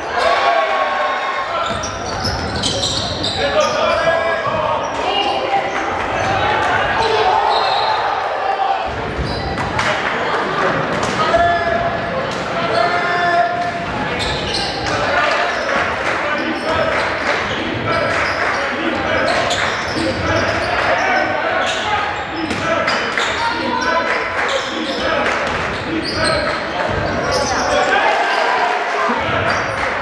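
Live sound of a basketball game in a gym: a basketball bouncing on the hardwood court, heard as repeated sharp thuds, under a steady mix of shouting players and chattering spectators, all echoing in the hall.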